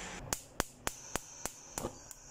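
A quick run of sharp, evenly spaced clicks, about three or four a second, over a faint steady hum.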